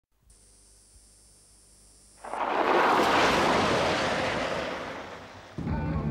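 A sudden loud rushing noise swells up about two seconds in and fades away over the next three seconds. Near the end it gives way to a car engine running, heard from inside the cabin.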